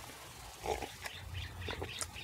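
A person sipping a drink from a mug: a few short, quiet slurps and breaths.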